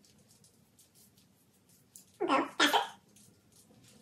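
Faint, quick scratching strokes of a handheld dermaroller's needle drum rolling back and forth over the skin of the thigh, a few strokes a second. About two seconds in, two short, loud vocal bursts from the person using it.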